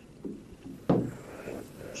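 A pause between a man's sentences, holding faint background noise and a single sharp click about a second in.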